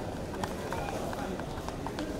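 Quick footsteps clicking on a hard floor as several people walk, about four or five steps a second, over a murmur of voices.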